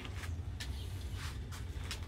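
A steady low hum with a few faint, short ticks and rustles over it.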